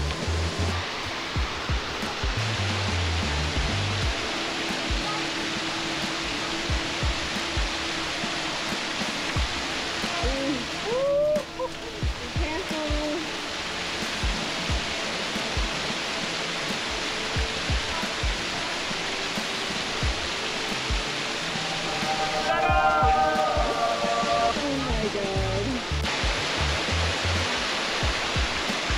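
Small mountain waterfall splashing steadily over rocks into a shallow stream, with background music underneath.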